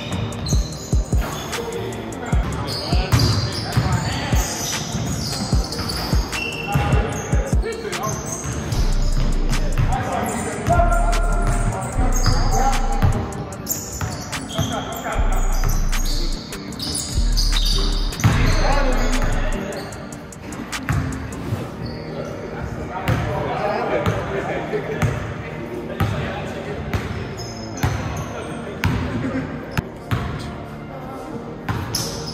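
A basketball being dribbled and bouncing on a hardwood gym floor during live play, with sneakers squeaking on the court and players' voices echoing in the large hall.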